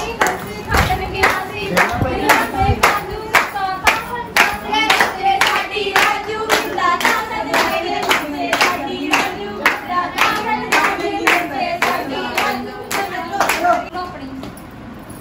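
A group of women and girls clapping in a steady rhythm, about two claps a second, while singing together to accompany Punjabi gidha dancing.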